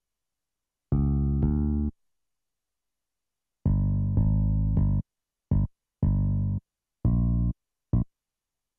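FL Studio's BooBass bass synth playing single notes one at a time as they are clicked into the piano roll: about nine short bass notes in small groups, with silence between them.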